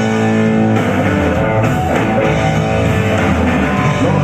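Live electric blues-rock band playing an instrumental passage with no singing: electric guitar over electric bass and a drum kit.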